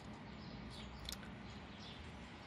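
A few faint, short bird chirps over a low, steady background hum, the sharpest chirp about a second in.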